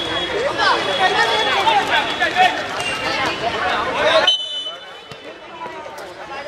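Several men shouting and calling out over one another during play, loud and unintelligible. The voices cut off abruptly about four seconds in, leaving a quieter background.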